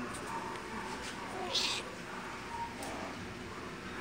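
A black-and-white cat meowing faintly and briefly over low background noise.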